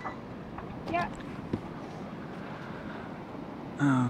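A sailboat's auxiliary engine running steadily in reverse, backing down on the anchor so it digs in and the chain pulls taut. A short click about one and a half seconds in.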